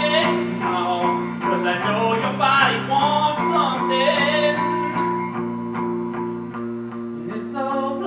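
A man sings live to his own electric guitar, which plays sustained chords under the voice. The singing thins out over the last few seconds while the guitar carries on.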